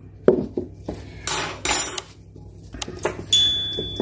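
A metal teaspoon clinking against a glass bowl as sugar is spooned onto fresh yeast and stirred in. A whoosh about a second in and a high bell-like ding a little after three seconds come from an on-screen subscribe-button animation.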